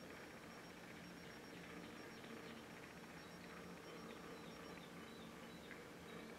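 Near silence: faint room tone with a low, steady hum.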